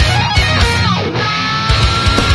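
Heavy metal track in an instrumental section: distorted electric guitar lead over drums and bass. About halfway through, a note slides down, then a high note is held.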